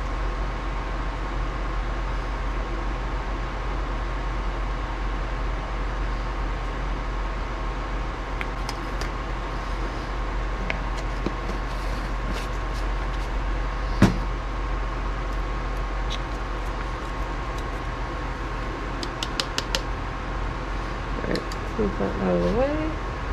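Steady fan-like hum with a faint high whine, broken by one sharp click about two thirds of the way through and a few light ticks near the end as small utensils are handled at a kitchen scale.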